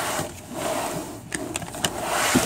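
Handling of a green plastic bucket as its lid is fitted on: rustling handling noise with a few sharp clicks in the second half.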